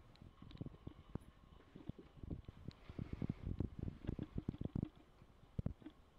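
Mouth noises of someone holding and working a mouthful of dry ground cinnamon: irregular soft clicks, smacks and swallowing sounds, with no words.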